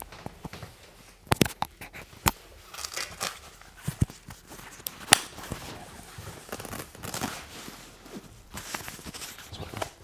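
A barber's cape and paper neck strip being handled and pulled away at the neck: rustling, crinkling and tearing, with a few sharp clicks and snaps through the first half.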